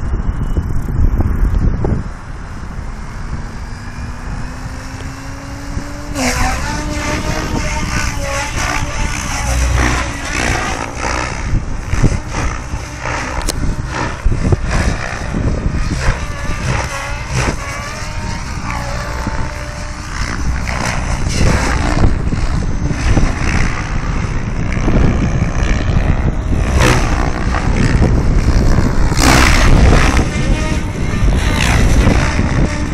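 Goblin 700 electric RC helicopter spooling up, its rotor tone rising steadily for a few seconds, then flying 3D aerobatics with the rotor and motor pitch swinging up and down again and again as the blades load and unload, over low rumble on the microphone.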